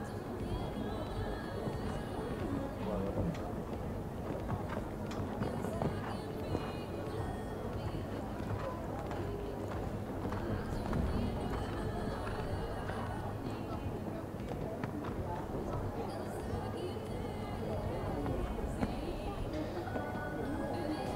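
A show jumping horse cantering and taking fences on sand footing, its hoofbeats muffled by the sand. Arena background music and distant voices are heard with it.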